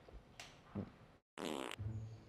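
A loud, buzzy fart, under half a second long, about a second and a half in, cut in after a moment of dead silence. Comic bowed and plucked double-bass music starts right after it.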